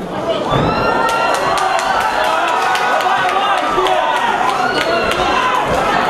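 Spectators at a cage fight shouting and cheering, suddenly louder about half a second in and staying loud, with a run of sharp smacks or claps about four a second through the middle.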